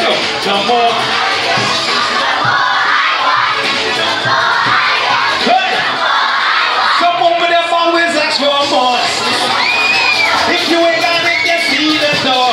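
A crowd of children cheering and shouting over loud music. About halfway through, a singing voice over the music comes through more clearly.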